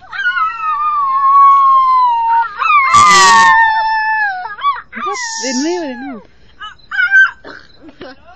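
A dog howling together with people howling in imitation: two long, slowly falling howls in the first half, then shorter rising-and-falling howls.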